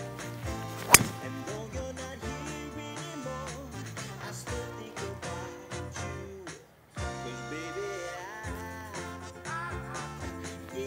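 A golf driver strikes the ball off the tee about a second in: one sharp, loud crack. Background music plays through the rest, dropping out briefly about two-thirds of the way through.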